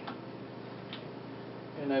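Two light clicks about a second apart from hands handling telescope parts at the diagonal, over a steady low hum.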